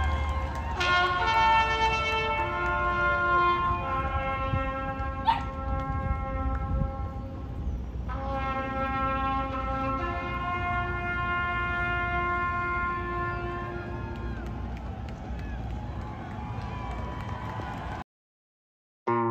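Music with a horn-like wind instrument holding long notes that change every few seconds, slowly fading toward the end, with one sharp click about five seconds in.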